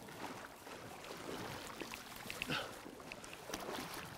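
Faint flowing river water, with a few small splashes around the middle from an angler wading and bringing in a brown trout.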